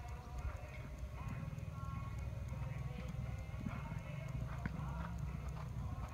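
Hoofbeats of a horse cantering on a sand arena footing, over a steady low rumble.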